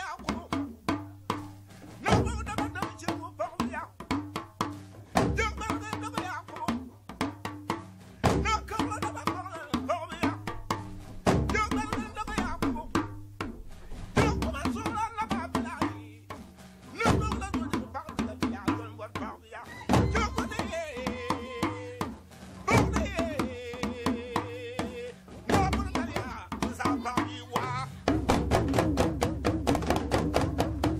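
Dagbamba drum ensemble in a field recording: lunga hourglass talking drums playing strokes that bend in pitch, over deep gungon drum beats. A singer with a strong vibrato comes in briefly about two-thirds of the way through, and near the end the drumming turns faster and denser.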